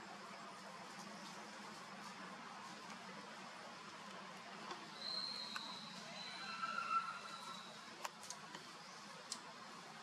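Quiet forest ambience. About halfway through, a thin high call holds for a couple of seconds, falling slightly, with a lower pitched call overlapping near its end; a few light clicks follow.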